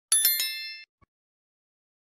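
A notification-bell chime sound effect, struck once just after the start and ringing out in under a second.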